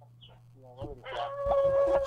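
A rooster crowing, one long call that holds a steady note through the second half.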